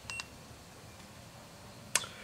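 Handheld OBDII code reader giving one short, high electronic beep as a key is pressed, then a single sharp click near the end.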